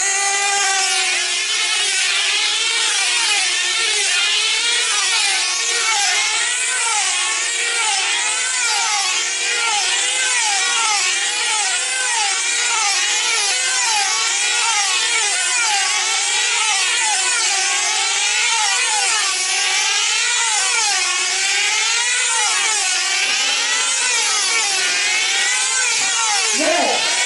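Several F2C team-race model aircraft running their 2.5 cc diesel engines at full speed together, a high, buzzing whine whose pitch rises and falls over and over as the models lap the circle.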